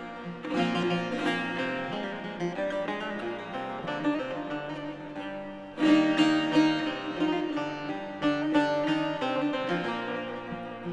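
Bağlama (long-necked saz) and guitar playing an instrumental folk passage together in quick plucked notes. The playing gets suddenly louder about six seconds in.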